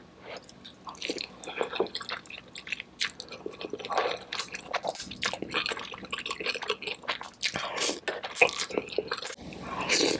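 Close-miked mouth sounds of eating sauce-coated noodles: wet slurps, smacks and chewing in a busy, irregular run of short clicks.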